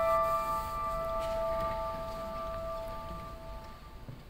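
Grand piano chord left ringing on the sustain pedal, slowly dying away until it fades out near the end.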